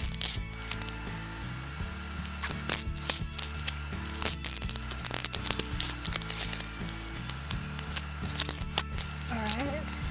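Background music with steady low held notes, over irregular crinkling, crackling and tearing of a parcel's plastic packaging and tape being pulled off by hand.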